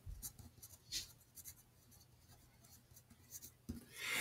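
Pencil writing a word on paper: faint, short scratches, the clearest about a second in and a few more near the end.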